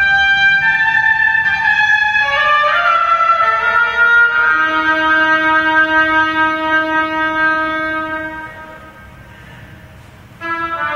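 Solo oboe playing a slow melody: a few changing notes, then one long held low note of about four seconds that fades out a little before the end, leaving a short rest.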